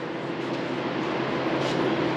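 Steady mechanical background noise of a workshop: a continuous rushing hum with a faint low steady tone, growing slightly louder.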